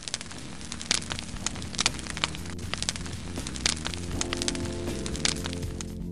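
Intro music over a crackling fire: a steady low rumble of flames dotted with many sharp, irregular crackles, with held musical tones coming in about four seconds in.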